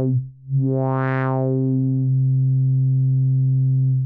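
Moog Mother-32 sawtooth wave played through a Rossum Evolution transistor-ladder filter at high input level: a low synth note that cuts off just after the start, then a new note about half a second in that brightens, mellows again and holds steady. It stays clean, with no real distortion, even with the sawtooth cranked up.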